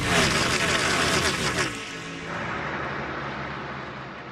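Logo stinger sound effect: a race car passes with its engine pitch falling, mixed with a music sting, then settles into a tone that fades out.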